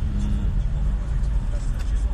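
Steady low rumble of a car heard from inside its cabin: engine and road noise.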